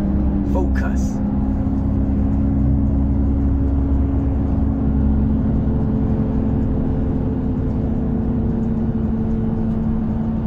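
Heavy truck's diesel engine and retarder droning steadily in the cab while holding the truck back on a long downhill, retarder on stage three in eighth gear with no foot brake. A brief click sounds about a second in.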